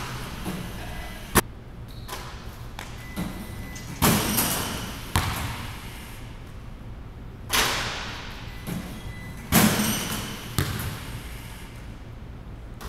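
Basketball impacts in a large echoing gym: a sharp crack, then several loud thuds a second or more apart as shots hit the rim and backboard and the ball bounces on the hardwood, each ringing out in the hall.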